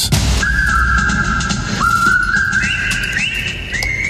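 Station ident jingle: a whistle-like lead holding long notes that each slide up into pitch and step between a few pitches, over a low bass.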